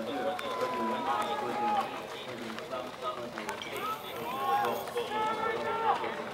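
Several spectators' voices shouting and calling out encouragement over one another, some calls long and drawn out.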